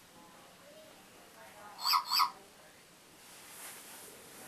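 Two short, high electronic chirps in quick succession from a small robot toy dog, about two seconds in.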